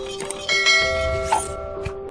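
A bell-like chime sound effect rings about half a second in and fades within a second, over background music with a repeating note. A sharp click comes shortly after the middle.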